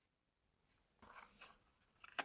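Near silence, with faint, brief rustling of tarot cards being handled about a second in.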